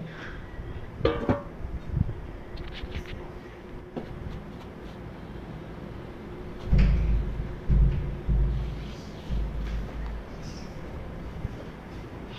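Leaves and stems of a leafy vine rustling as greens are picked by hand, with low rumbling bumps of wind or handling on the microphone from about seven to nine and a half seconds in.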